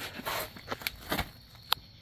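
A hand picking up and handling a small metal mini starter motor on a concrete floor: a few short scrapes and knocks, with a sharp click near the end.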